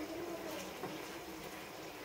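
Faint bubbling of a thick sauce simmering in a frying pan on a gas stove, stirred with a spatula.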